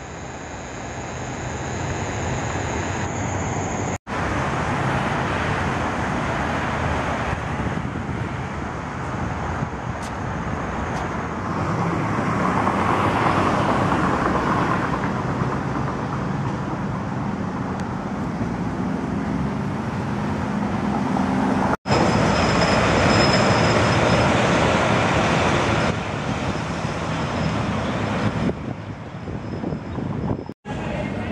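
City street traffic noise: a steady wash of passing vehicles, broken off for an instant twice, about four seconds in and about three-quarters of the way through, where one clip cuts to the next.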